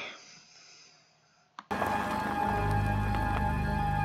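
Near quiet, then a short click, and a dark, droning horror-film score starts abruptly: a steady held tone over a deep low hum.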